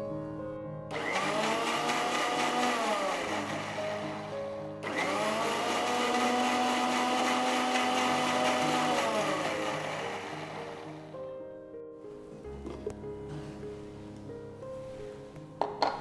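Electric mixer grinder with a steel jar puréeing cooked cauliflower and milk into soup. It runs twice, about three seconds and then about six seconds, and winds down in pitch each time it is switched off.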